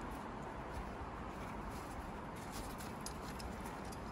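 Faint rustling of a nylon sling and climbing gear being handled, with a few light clicks near the middle, over a steady background hiss.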